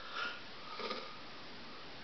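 Quiet small-room tone with a faint sniff or breath near the start and another soft breathy sound just before the one-second mark.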